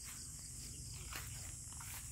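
Steady high-pitched insect chorus over a low, even background rumble.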